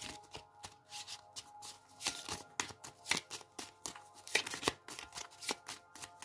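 A deck of tarot cards being shuffled by hand, the cards slapping and flicking against each other in a quick, irregular run of soft clicks, several a second.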